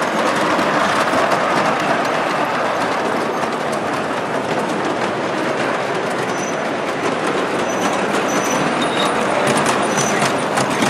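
Large-scale model trains rolling on the track, a steady rumble with fine clicking from the wheels over the rails and a few brief high squeals in the second half.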